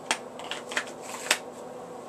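Light handling clicks and knocks as a handgun is put down and away: four short sharp ones in about a second and a half, the last the loudest.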